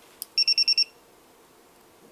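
A light click, then a digital multimeter giving five quick high-pitched beeps within half a second as its test probes are touched together for a resistance auto-range test.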